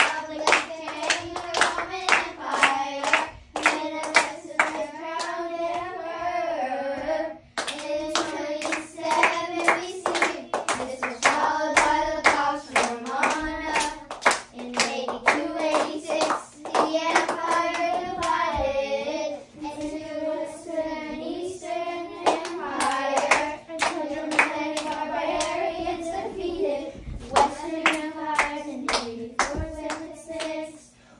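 A group of children singing a memorized chant together while clapping their hands along, with a couple of brief pauses between verses.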